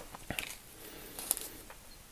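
A few faint, short taps and rustles of small items being handled and set down, over quiet room tone.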